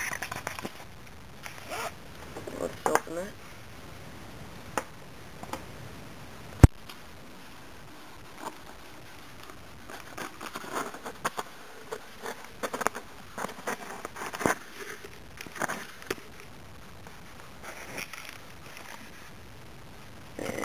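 A blade slitting the packing tape along the seam of a cardboard shipping box, in a series of short strokes with scattered clicks. One sharp click about six and a half seconds in is the loudest sound.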